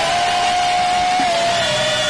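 Live gospel worship singing: a lead voice holds one long sustained note over backing singers and accompaniment, the note sliding slightly lower near the end.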